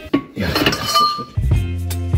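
Light metallic clinks and a brief ring of a steel wrench against the control-arm bolt and nut in the first second or so. Background music with a steady bass beat comes back in about halfway through.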